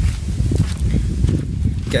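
Wind buffeting the phone's microphone as a loud, low, uneven rumble, with a few footsteps on dirt ground.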